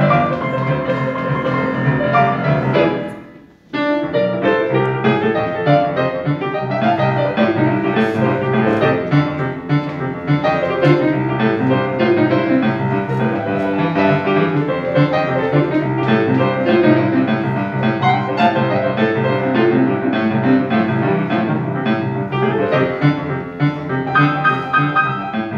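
Grand piano played live: a self-composed boogie piece with dense, busy keyboard playing. About three seconds in, the sound dies away in a brief break, then the playing resumes suddenly.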